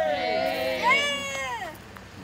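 Several high voices in a drawn-out, celebratory shout or cheer, rising then falling in pitch and dying away near the end.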